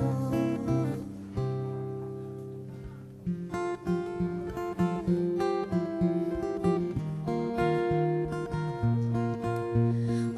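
Acoustic guitar played alone: a strummed chord rings out and fades away for about two seconds, then picked notes start again in a steady rhythm.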